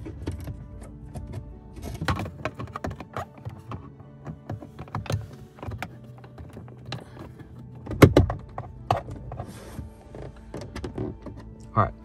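Plastic dash-cam cover and its cables being handled and pressed into place behind the rearview mirror: a scattered run of small plastic clicks and knocks, with one sharp, loud click about eight seconds in. Soft background music plays underneath.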